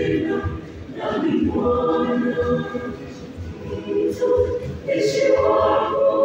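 Mixed youth choir of girls' and boys' voices singing together in parts, holding sustained chords.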